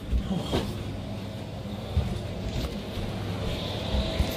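Low rumble and a few soft bumps from a phone's microphone being handled as the phone is moved around, over steady room hum.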